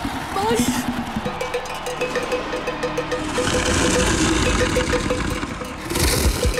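Animated fight-scene soundtrack: a short vocal grunt near the start, then a rumbling sound effect under a fast, evenly repeated note about five times a second.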